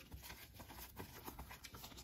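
Faint soft ticks and rustling of cardboard trading cards being thumbed through and passed from one hand to the other.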